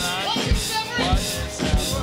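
A church choir singing a gospel song with a live band, a drum kit keeping a steady beat with the bass drum striking about twice a second.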